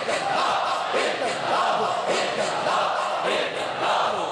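A large congregation of men chanting dhikr together loudly, many voices overlapping, with a swell about once a second.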